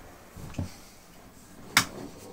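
Handling noise as an acoustic guitar is picked up: a dull thump about half a second in, then a sharp, louder knock near the end.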